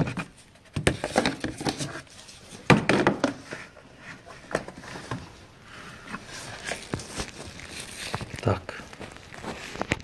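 Handling noise from a camera being moved about in an engine bay: scattered knocks, scrapes and rustles against plastic covers and hoses. No engine is running.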